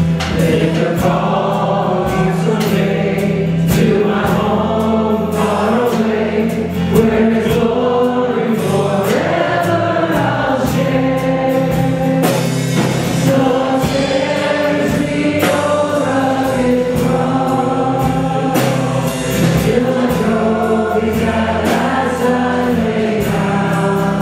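Live worship band playing a gospel song: several singers on microphones singing together over guitar and drums.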